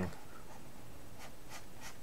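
Faint scratching and a few light taps of a stylus pen drawing on a graphics tablet.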